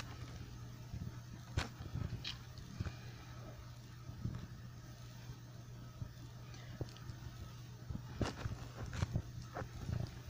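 Faint steady low hum with a few scattered short clicks and knocks.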